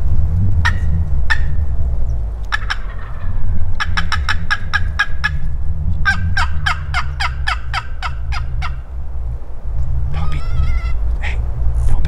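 Wild turkeys calling: two runs of rapid, clipped notes, the second longer, then a short warbling call near the end, over a steady low rumble.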